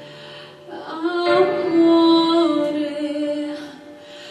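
A woman singing a pop song live over instrumental accompaniment: a quieter passage of held accompaniment, then a sung phrase with long held notes enters about a second in and fades near the end.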